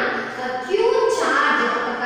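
Only speech: a woman's voice lecturing.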